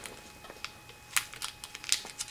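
Scattered light clicks and crinkles at an uneven pace from small packets of dental putty being handled, with two sharper clicks in the second half.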